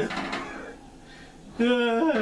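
Speech, then about a second and a half in, a loud, drawn-out vocal exclamation that sets in abruptly.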